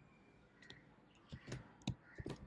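Faint keystrokes on a computer keyboard: about four separate clicks in the second half, the loudest near the end.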